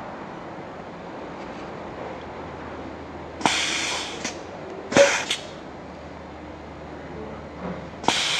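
Compressed air hissing in short bursts from the exhaust ports of a double-solenoid 5-way 2-position NAMUR valve as its manual override is pressed and the pneumatic actuator shifts, the exhaust passing through a newly fitted flow control. There is a hiss of nearly a second about three and a half seconds in, then a click and a shorter hiss about five seconds in, and another hiss starting at the very end.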